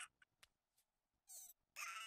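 Near silence, then in the second half two faint, quavering moans from an anime character's weak, pained voice.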